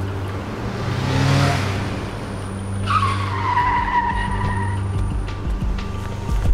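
Car tyres screeching for nearly two seconds, starting about halfway through, in a slightly falling high squeal. A rushing swell of noise comes about a second in, and a steady low hum runs underneath.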